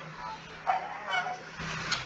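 A woman's voice reading aloud over a video-call connection, with a steady low hum underneath.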